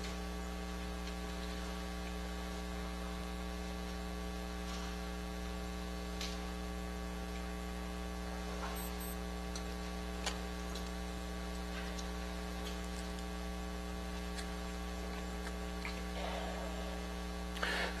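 Steady electrical mains hum with a ladder of harmonics, a buzz carried in the audio feed, with a couple of faint clicks.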